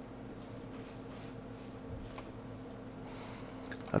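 Faint, scattered clicks of a computer mouse and keyboard being worked, a few irregular clicks over a couple of seconds, over a steady low hum.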